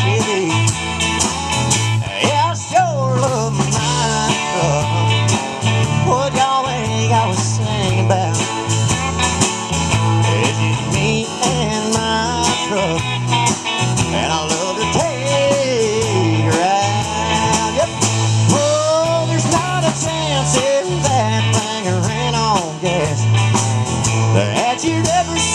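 Live country band in an instrumental break: a lead guitar plays a melody full of bent notes over strummed acoustic guitar, bass and drums keeping a steady beat.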